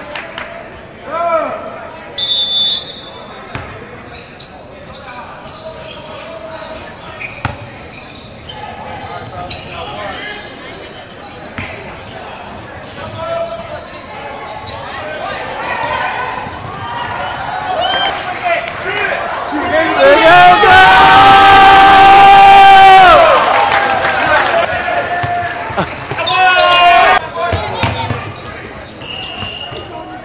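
Basketball game in a large gym: a ball bouncing on the hardwood floor and scattered voices echoing in the hall. About twenty seconds in comes a loud, sustained shout lasting about three seconds, the loudest sound.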